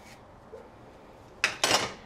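A folding pocket knife set down on a plate: a sharp clink about one and a half seconds in, followed by a brief clatter.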